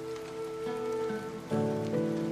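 Soft background music of sustained held chords over a steady patter of rain, with a new, louder chord coming in about a second and a half in.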